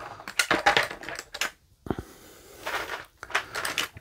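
Stacks of heavy poker-chip game tokens clicking and clattering in a clear plastic tray as it is lifted and set down, with light knocks of the tray against the box insert. The clicks come in a quick run at first and again near the end.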